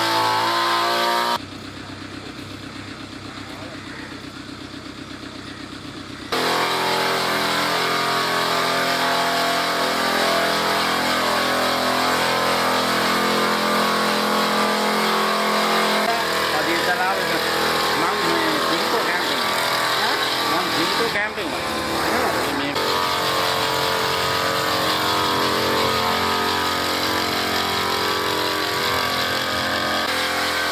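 Small engine of a backpack power sprayer running steadily, with voices in the background. The sound drops quieter for about five seconds shortly after the start, then comes back at its earlier level.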